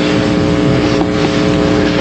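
A steady rushing noise with a constant low hum on an old recording, cut off suddenly near the end.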